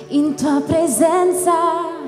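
A woman singing a live worship song into a microphone in short phrases with vibrato, over a held backing chord from the band.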